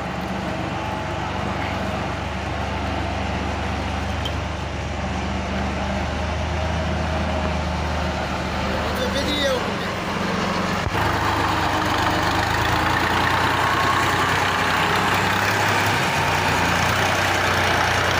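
Tractor's diesel engine running steadily while it hauls and manoeuvres a loaded sand trolley, growing louder and harsher about eleven seconds in as it takes more throttle.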